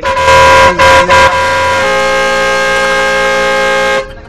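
Loud horn sounding: three short blasts, then one long steady blast that cuts off abruptly.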